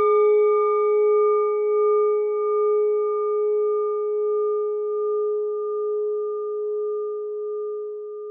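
A struck bell-like chime ringing out as one long tone that slowly fades, with a gentle waver in it.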